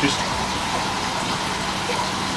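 Steady rush of running water splashing into a shallow aquarium tank from its filtration system, with a faint steady hum under it.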